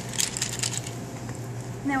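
Ice cubes clinking and rattling in a metal bar mixing tin, a quick run of sharp clicks in the first second.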